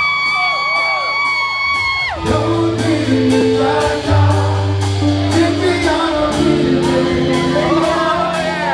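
Live reggae band playing: deep bass notes and keyboard chords under a hi-hat ticking about twice a second. A long held high note sounds for the first two seconds, with whoops from the crowd.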